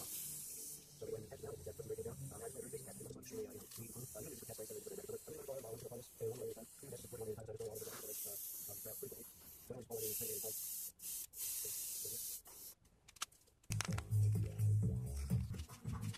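Gravity-feed airbrush spraying paint in hissing bursts with short breaks, over a salted model part. The spray stops a couple of seconds before the end.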